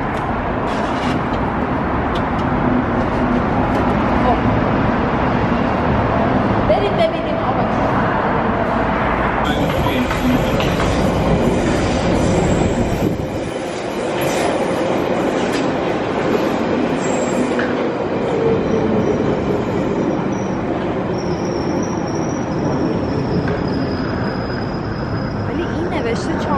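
London Underground tube train running along a surface platform: a steady rumble of wheels with a motor whine that slowly changes pitch, and a thin high squeal near the end as the train pulls out.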